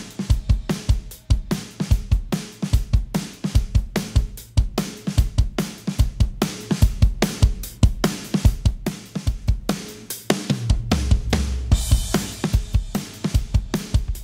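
Recorded drum kit playing a steady groove of kick, snare and hi-hat off the drum bus of a mix, run through a New York–style parallel compressor whose compression is being dialled in. A longer low boom comes in about ten seconds in.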